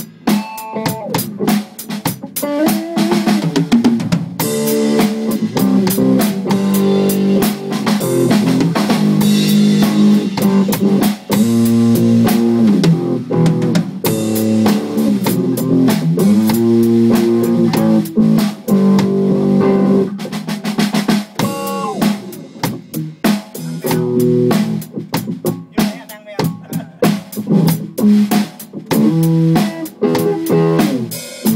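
Electric guitar and a Ludwig drum kit playing live together: a guitar melody with bent, gliding notes over a steady drum beat.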